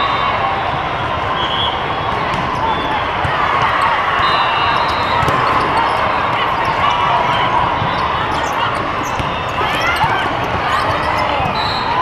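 Loud, echoing hubbub of a large hall full of indoor volleyball play: many voices blended together, with frequent sharp hits and bounces of volleyballs.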